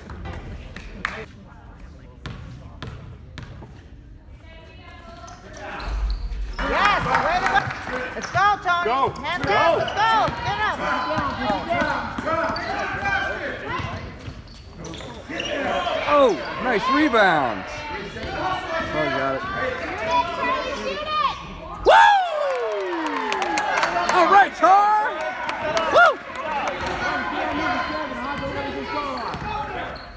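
Basketball game on a gym's hardwood court: a basketball bouncing, with sneakers squeaking and players and spectators shouting. The first few seconds are quieter with a few scattered knocks, and the action gets much busier about six seconds in.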